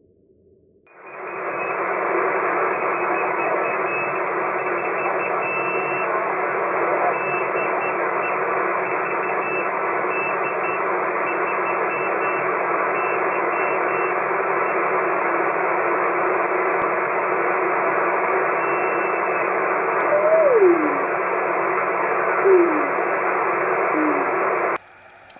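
Shortwave receiver audio from a KiwiSDR web receiver on the 40 m band: steady band-limited hiss, switching on about a second in, with a weak keyed CW signal from a one-transistor crystal transmitter. Near the end the signal's note slides sharply down in pitch twice. This is a frequency jump that the builder takes as a sign that not all is well with the small crystals, perhaps from heating.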